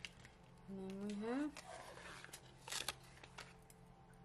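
A short hummed vocal sound rising in pitch about a second in. It is followed by rustling and crinkling of paper sticker sheets being handled, with a few light clicks.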